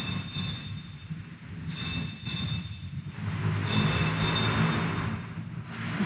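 Altar bells rung three times, about two seconds apart, at the elevation of the chalice during the consecration. Each ring is a bright cluster of high bell tones that fades out.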